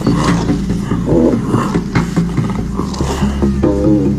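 Several short animal calls, the sound-designed voices of diprotodons, over sustained low background music.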